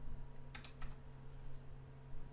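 A few faint computer keyboard keystrokes, close together about half a second in, over a steady low electrical hum.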